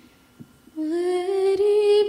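A woman's voice starts singing about three-quarters of a second in, after a moment of quiet, holding one long, slightly wavering note.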